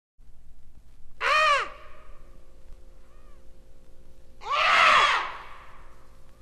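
Two long cawing calls like a crow's, about three seconds apart, each rising then falling in pitch and followed by a faint echo. They play from a vinyl record over a steady hum and surface crackle.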